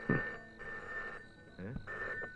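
Landline telephone ringing: a high steady electronic ring lasting just over a second, breaking off, then ringing again near the end.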